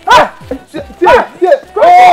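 A dog barking rapidly, about five barks in two seconds, the last one drawn out longer near the end.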